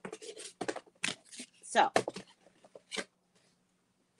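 Handling noises close to the microphone: a quick run of short rustles and clicks over about three seconds as things are moved about, then quiet.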